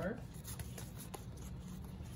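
Pokémon trading cards being handled and laid down: faint rustling of card stock with a few light clicks about half a second and a second in.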